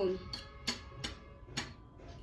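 A metal fork clinking against a ceramic plate while eating, about four short, sharp clinks spread across two seconds.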